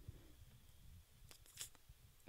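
Near silence: room tone in a small room, with a few faint brief noises about one and a half seconds in.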